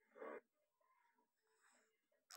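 Near silence, broken once a fraction of a second in by a single short, soft breathy sound from a baby.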